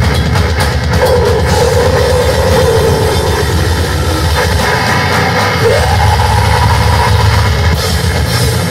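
Metal band playing live at high volume: distorted electric guitars, bass and drum kit, with a held guitar note wavering over the riffing and stepping up in pitch about halfway through.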